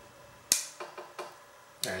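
A sharp metallic click about half a second in, followed by a few fainter clicks: a folding tool on a cheap stainless pocket multi-tool snapping on its spring as it is handled.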